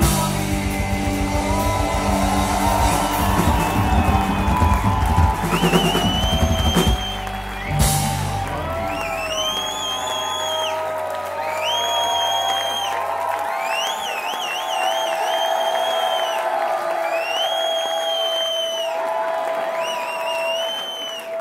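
Live rock band with electric guitars, bass and drum kit playing loud to the close of a song. Around eight seconds in, a final hit ends the drums and bass. Electric guitar then keeps ringing out alone, with high held notes that swell and fall about every two seconds over a steady sustained tone.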